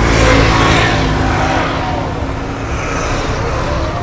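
A motor vehicle's engine running as it passes close by on the road. It is loudest near the start and then eases off.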